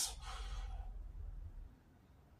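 A man's long sigh, a soft breath out that fades away after about a second and a half.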